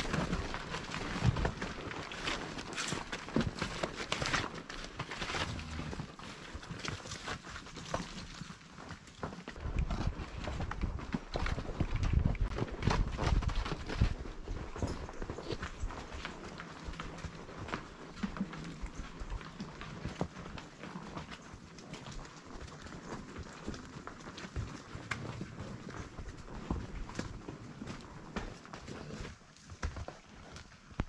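Hooves of the ridden mount and the cattle ahead walking down a steep, rocky dirt trail: an irregular run of clopping knocks on stone and earth, with heavier low rumbles about ten to fourteen seconds in.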